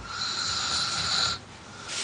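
A sleeping man snoring: a steady whistling breath lasting just over a second, then a short breathy sound near the end.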